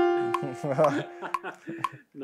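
The last note of a tune played on an iPad piano-keyboard app rings and fades over the first half second. A man's voice follows, with soft clicks about every half second.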